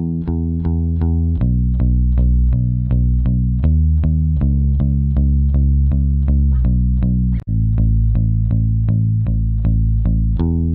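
Electric bass guitar playing a steady line of picked notes, about four a second, with the pitch changing every second or so, compressed through an emulation of the EMI RS124 compressor. There is a momentary dropout about seven and a half seconds in.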